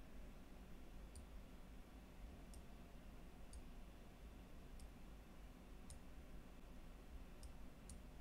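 Faint computer mouse clicks, about seven, spaced irregularly, over a low steady background hum.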